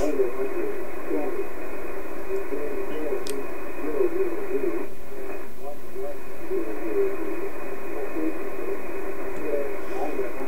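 Shortwave aviation weather voice broadcast received on a software-defined radio in upper sideband: a thin, narrow-band voice that keeps talking over steady background hiss. It is taken for the Gander or New York VOLMET on the 8 MHz aero band.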